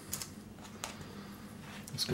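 Hands working potting soil around an acorn in a small plastic plant pot: faint scratching, with a couple of light clicks where the fingers and pot knock together.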